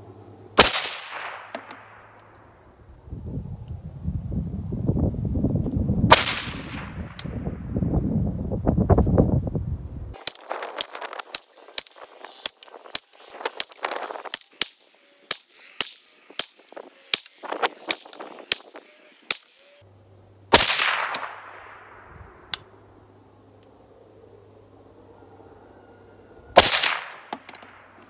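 Shots from a 7-inch-barrel 5.56 AR-style rifle fitted with a suppressor. Two single shots a few seconds apart are followed by a fast string of about eighteen shots, roughly two a second, then a few more spaced shots. A low rumble underlies the first ten seconds.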